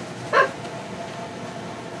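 A single short yelp-like vocal sound about a third of a second in, over a low steady background.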